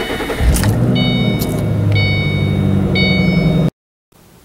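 2007 Ford Mustang GT's 4.6-litre V8 being started with the key, catching about half a second in, its revs flaring briefly and then settling into a steady idle, heard from inside the cabin. An electronic chime repeats about once a second over the idle, and the sound cuts off suddenly near the end.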